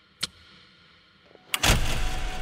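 Sound effects opening a stage music performance: one sharp tick over a faint hiss, then about one and a half seconds in a loud hit with deep bass and a rush of noise as the music starts.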